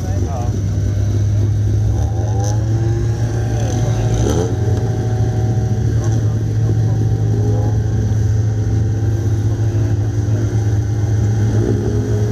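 Several folkrace cars' engines idling and revving on the start grid, the pitch drifting up and down as drivers blip the throttle.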